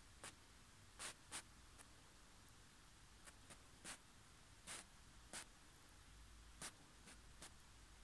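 Near silence, broken by about a dozen faint, short clicks at irregular intervals over a faint low hum.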